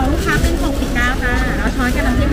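Shoppers and stall vendors talking close by, several voices overlapping, over a steady low rumble.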